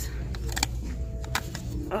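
A few light clicks and knocks as a snow globe is handled and tipped over in the hand, over a steady low background hum.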